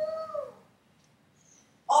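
A woman's voice holding a drawn-out, whining note that falls in pitch and fades out about half a second in. Near silence follows, until her speech resumes right at the end.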